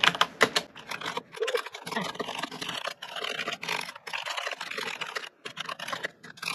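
Typing on a computer keyboard: a quick, irregular run of keystroke clicks with a few brief pauses.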